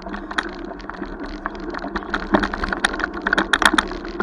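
Bicycle rattling over a bumpy dirt path: a fast, irregular run of clicks and knocks over a steady rolling rumble, densest about three and a half seconds in.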